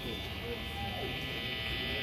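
Steady electric buzz and hum from guitar amplifiers idling on stage, with faint crowd voices underneath.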